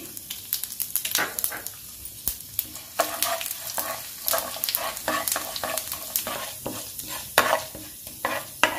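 Tempering of dals and seeds sizzling in hot oil in a nonstick kadai. From about three seconds in, a spatula stirs and scrapes them across the pan in a run of quick strokes.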